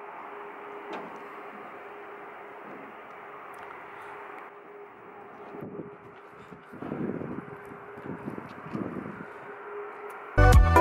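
Steady outdoor background hiss with a faint constant hum. In the second half come a few dull, irregular footfalls on metal aircraft boarding stairs as someone walks down them.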